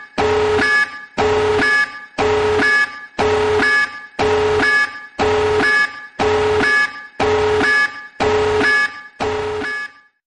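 Warning alarm for an incoming tactical nuke sounding in loud pulses about once a second. Each pulse is a steady low tone that ends in a short higher beep. It cuts off suddenly at the end.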